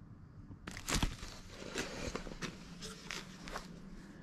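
Quiet handling noise of parts being moved about on a workbench: scattered light clicks and rustles, with one louder knock about a second in.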